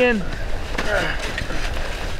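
Avalanche shovels digging and scraping through packed snow in quick, uneven strokes, with faint voices in the background.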